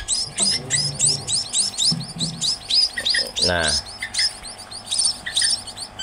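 Young munias chirping rapidly and continuously, many short high calls overlapping at about four or five a second.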